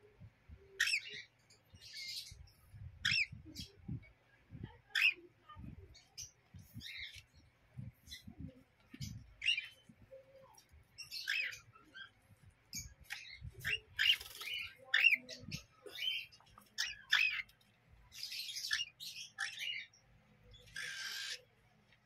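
Parrot chicks, cockatiels among them, calling over and over: short chirps that bend up and down in pitch, one or two a second, with harsher rasping squawks in the second half. Soft low thumps sound beneath the calls.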